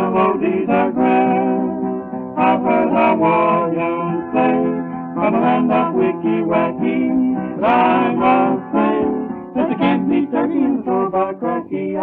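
Early-1930s hillbilly string-band 78 rpm record (a vocal trio with guitar accompaniment) playing a passage without lyrics: strummed guitar under a bending, pitched melody line. The sound is narrow and dull, with no treble.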